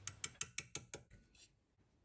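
Rapid light taps of a small hammer on a pin punch, about six a second, driving a seized float pivot pin out of the aluminium posts of an old Mikuni carburettor. The taps grow fainter and stop about a second and a half in.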